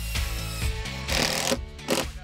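DeWalt miter saw running, with a short cut through a wooden batten about a second in, over background music.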